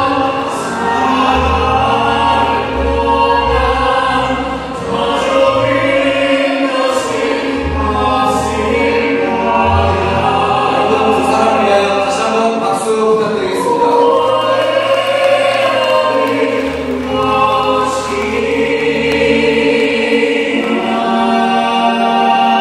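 Several voices singing together in harmony, a musical-theatre style wedding song, over instrumental accompaniment with a changing bass line.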